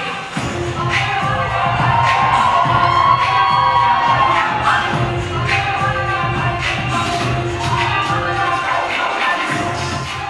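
Recorded dance music with a steady beat played loud through a hall's sound system, with an audience cheering and shouting over it, loudest in the first half.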